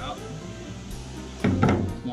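Background music, with a knock about one and a half seconds in as a stainless steel mixing bowl of shredded green papaya is set down on the table by the wooden cutting board.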